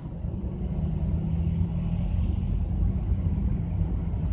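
Steady low rumble of a car with its engine running, heard from inside the cabin, with a steady low hum under it.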